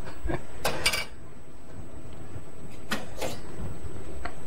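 Coffee cups and crockery knocking and clinking as they are handled. There is a short clatter about a second in and two lighter knocks near the end.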